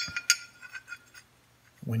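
Small pieces of steel plate clinking together in the hands, a ringing tone fading away in the first half second, with a couple of lighter taps.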